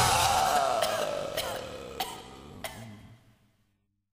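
The closing seconds of a rock track fading out. A falling, gliding tone sinks under the dying band sound, with a few sharp hits, and everything dies away about three seconds in.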